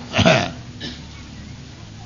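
A man's short, low grunt that falls in pitch, about a quarter of a second in, over the steady hiss of an old lecture tape recording.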